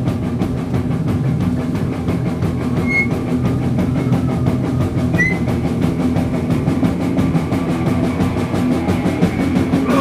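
Crust punk band playing live, loud, with the drums to the fore: a fast, even drum beat driving the guitars and bass.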